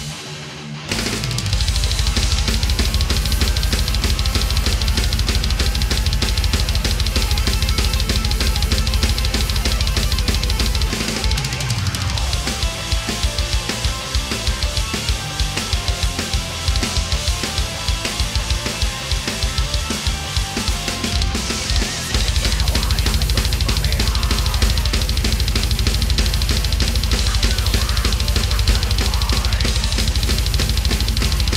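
Melodic death metal song played on a Yamaha DTX900 electronic drum kit, with guitars and keyboards, kicking in about a second in. Rapid, continuous kick drum strokes with snare and cymbals run for about ten seconds, then a looser, more broken drum pattern follows. The fast kick drumming returns about two-thirds of the way through.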